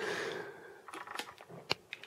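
Faint handling noise of two model-railway transformer housings being turned in the hands: a short breathy rustle at the start, then a few light clicks and taps.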